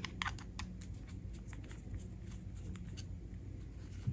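Faint small clicks and taps of a screwdriver and small screws on the metal terminals of a sewing machine's wiring plug as a terminal screw is undone, most of them in the first second, over a faint low hum.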